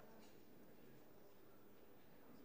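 Near silence: room tone, with a few faint clicks from typing on a keyboard.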